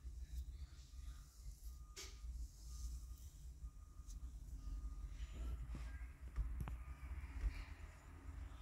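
Faint low background rumble with a few soft clicks scattered through it; no distinct sound event.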